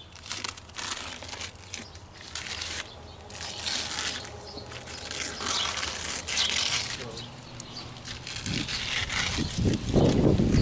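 A thin-set-coated protective covering sheet being peeled off flexible stone veneer, crinkling and tearing in irregular rasps. A louder low rumble comes near the end.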